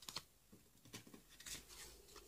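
Plastic satellite-TV smart cards being shuffled and slid against each other in the hands: a few faint clicks and scrapes.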